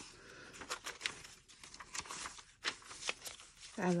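Paper rustling as the pages of a handmade paper journal are flipped and a cut-out paper picture is handled, with scattered small ticks and crinkles.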